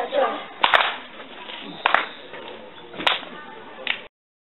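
Four sharp cracks, evenly spaced about a second apart, each ringing briefly.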